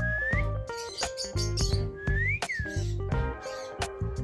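A parakeet whistling twice, a short rising whistle at the start and a rising-then-falling one about two seconds in, over background music with a steady beat.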